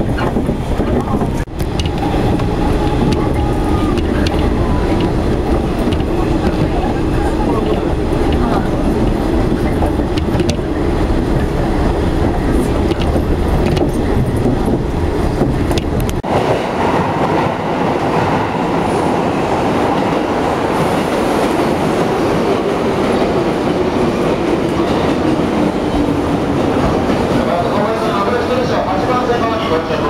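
115-series electric train running at speed, heard from inside the carriage: a steady rumble of wheels on the rails. About sixteen seconds in, the sound cuts abruptly to a station platform, where the low rumble drops away and a lighter platform ambience takes over.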